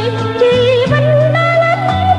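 Music: a classic Cambodian pop song, with a high, wavering melody line that steps up in pitch about a second in, over bass notes changing every half second or so.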